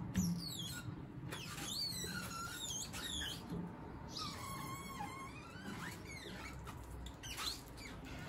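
Window-cleaning squeegee's rubber blade squeaking as it is drawn across wet glass: a string of short squeals that rise and fall in pitch, with a longer wavering squeal about four seconds in. A knock at the very start.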